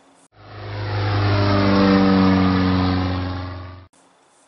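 A steady, low engine drone that swells up over about a second and a half, then fades and cuts off just before the end. It is a dubbed-in sound effect.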